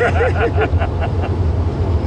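A man laughing in a quick run of short bursts for about the first second. Under it is the steady low rumble of the moving car heard from inside the cabin.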